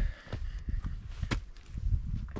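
Footsteps of a hiker climbing a steep dirt and rock trail: uneven crunching steps and scuffs, with one sharp click a little past the middle, over low thumps on the handheld camera.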